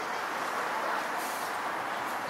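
Street traffic: a vehicle driving past on the road, its noise swelling to a peak about a second in and then fading.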